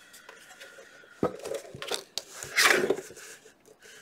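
A plastic-and-metal guillotine paper trimmer being set down and shifted on a cutting mat. A sharp knock comes about a second in, then clatter, and the loudest sound is a short scrape near the end as it slides into place.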